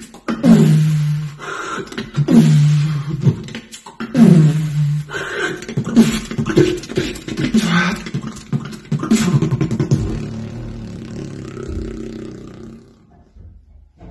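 Solo human beatboxing: deep bass notes that drop in pitch, repeating about every two seconds, with sharp clicks between them. Near the end the beat gives way to a held low hum that fades out.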